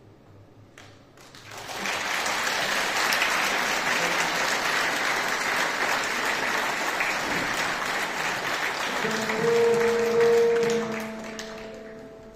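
Audience applauding, the clapping swelling in about a second and a half in and fading near the end. About nine seconds in, a stage keyboard starts sounding held notes under the applause.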